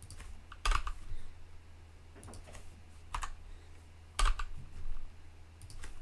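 Computer keyboard being typed on: single keystrokes and short runs of a few keys, irregularly spaced with pauses between them.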